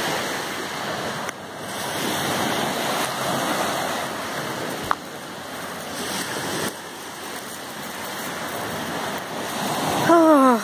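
Small waves breaking and washing up a shingle beach, the surge swelling and easing in turn. A single sharp click about five seconds in.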